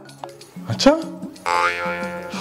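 Background music plays under a short spoken word. About one and a half seconds in, a louder held musical sound comes in suddenly.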